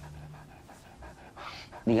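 A golden retriever panting softly.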